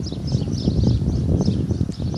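Outdoor rooftop ambience: low wind rumble on the microphone, with small birds chirping.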